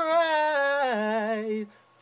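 A man singing unaccompanied, holding the word "cry" on one long note that steps down in pitch about a second in and ends shortly before two seconds.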